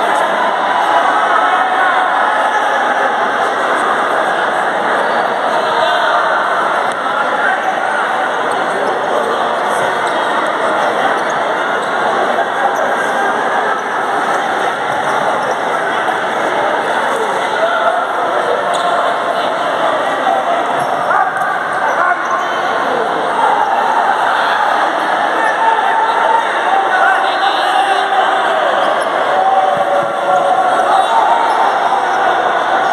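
Futsal match in play in a large sports hall: a steady din of indistinct spectator and player voices, with the ball thudding on the hard court now and then.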